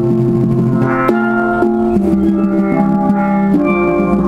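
Quadrophonic steelpan, a set of four steel pans, played with sticks: a tune of sustained, ringing pitched notes and chords that change every half second or so.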